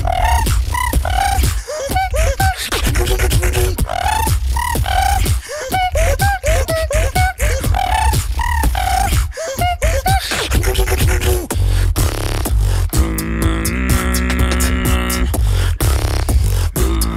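Two beatboxers performing a tag-team routine together into handheld microphones: quick percussive kicks and snares over a deep bass, with short gliding vocal chirps. About thirteen seconds in, the beat gives way to a long held, layered tone.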